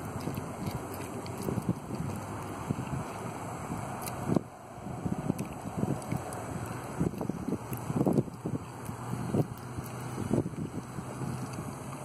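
Wind buffeting the microphone: a steady rush with irregular gusty bumps, thickest from about five seconds in.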